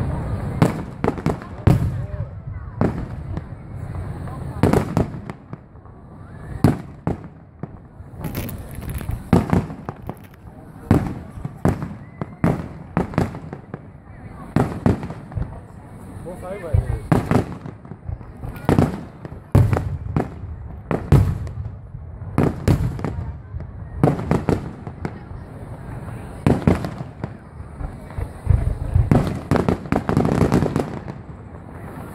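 Aerial firework shells bursting in a long, irregular series of sharp bangs, sometimes two or three within a second, over a low rumble.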